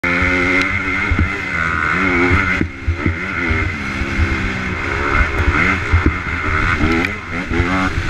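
2010 Honda CRF250R's single-cylinder four-stroke engine revving hard under throttle and falling off again and again as the bike is ridden along a motocross track, heard through a helmet-mounted camera. The throttle is chopped sharply about two and a half seconds in before it pulls again.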